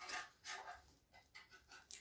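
Faint scratching and crinkling of a craft knife blade slicing the plastic shrink wrap on a metal tin, in a few short strokes.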